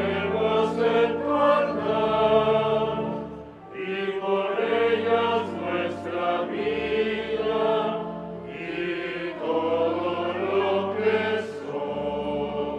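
A choir singing a slow hymn in long phrases over a held low accompaniment, the offertory chant during the preparation of the gifts at Mass. The singing drops briefly about four seconds in, between phrases.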